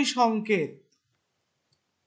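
A short spoken phrase in Bengali that ends within the first second, then near silence.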